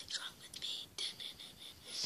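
A boy whispering in short, breathy bursts.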